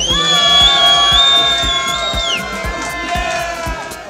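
House music with a steady kick-drum beat under a cheering club crowd, with one long, high held shout that falls away after about two and a half seconds.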